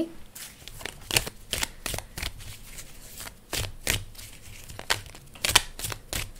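A deck of tarot cards being shuffled by hand: irregular short snaps and riffles as the cards slap together, with a cluster of sharper ones near the end.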